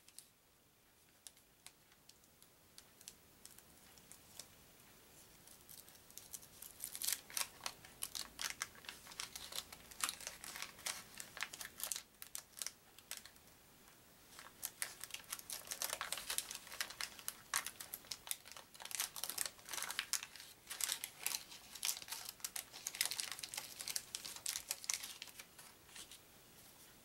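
A trading-card pack's wrapper being opened by hand: after a few quiet seconds come runs of quick crinkling and crackling, which ease off briefly around the middle and then pick up again.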